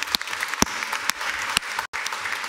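Congregation applauding: many hands clapping in a steady patter, with a very brief dropout in the sound near the end.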